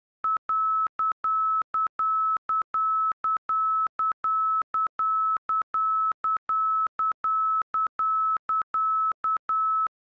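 ILS middle marker beacon identification tone: a steady 1,300 Hz beep keyed in a repeating dot-dash-dot-dash pattern, short and long beeps alternating rapidly, as heard from a cockpit marker beacon receiver.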